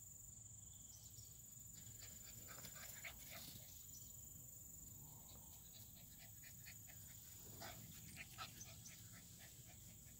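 American Bully puppies at play in grass, heard faintly: a run of short quick breathy sounds from about two seconds in, typical of puppy panting. Under it runs a steady high buzz of insects.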